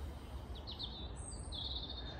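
Songbirds chirping in short high calls, about two-thirds of a second in and again near the end, over a steady low outdoor rumble.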